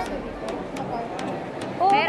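A person speaking over the steady background hubbub of a busy shopping mall, the voice rising near the end.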